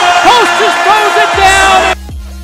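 Basketball play-by-play commentator's loud, excited voice finishing his call of a lob play, over crowd noise and a backing music track. It all cuts off abruptly at the end.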